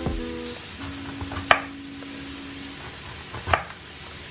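Kitchen knife slicing through a lemon and knocking on a wooden cutting board, twice: sharply about a second and a half in, and again near the end.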